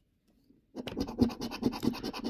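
A coin scraping the scratch-off coating of a Mega Multiplier scratch card in rapid short back-and-forth strokes. It starts about three-quarters of a second in, after a near-silent pause.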